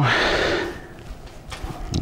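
A person's breath out, a short hiss lasting about half a second at the start, then quiet with a few faint clicks of handling.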